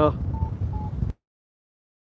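Wind rushing over the microphone with two short, high electronic beeps from a paragliding variometer sounding the climb in a thermal. A little over a second in, all sound cuts off at once into dead silence, typical of the live stream's mobile signal dropping out.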